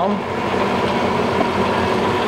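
Bridgeport Series II vertical milling machine running, a steady motor hum with a thin, even whine, as the quill is driven up and down on its motorised power feed.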